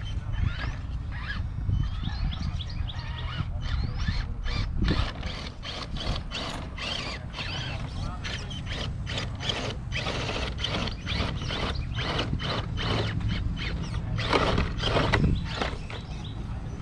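Radio-controlled scale crawler truck clambering over rock and a wooden log, its drivetrain and tyres giving irregular clicks and crunches a few times a second, loudest near the end. Birds chirp near the start over a steady low rumble.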